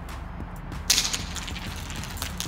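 A Thrunite TC20 flashlight dropped onto a concrete floor in a drop test: one sharp clatter about a second in, then a few smaller knocks as it bounces and settles.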